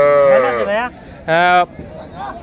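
Cattle mooing: one long call with a gently arching pitch, then a shorter second call about a second and a half in.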